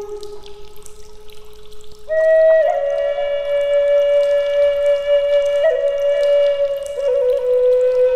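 Background music: a solo flute playing slow, long held notes. A softer note fades over the first two seconds, then a louder, higher note comes in and the melody steps down gently through a few more long notes, with small ornaments near the end.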